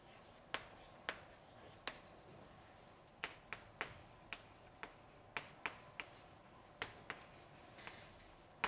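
Chalk writing on a blackboard: a string of sharp, irregular clicks and taps, about two a second, as each letter is struck onto the board.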